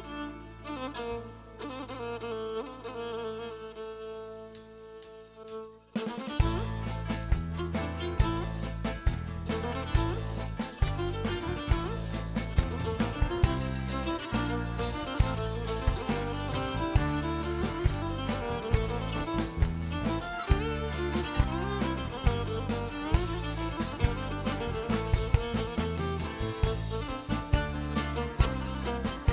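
Pontic lyra, a bowed folk fiddle, playing a slow introduction of long held notes. About six seconds in, the full band comes in with drums and bass on a steady dance beat, and the bowed lyra carries on over it.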